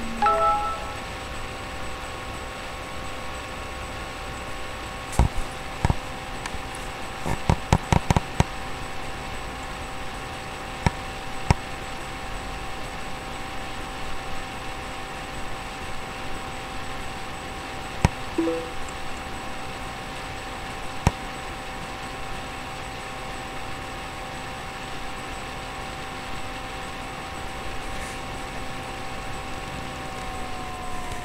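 A steady electronic hum made of a few held tones, with scattered sharp clicks and taps, including a quick run of clicks about seven to eight seconds in.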